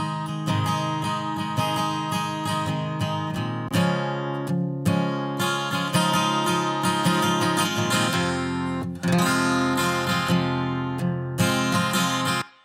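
Solo strummed acoustic guitar track played back from a mix, heard with and without its processing (EQ, 1176-style compression, chorus and reverb sends). The strumming runs steadily with a brief break about nine seconds in.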